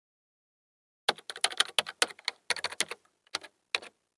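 Computer keyboard typing: a quick run of key clicks starting about a second in, thinning to a few single clicks near the end.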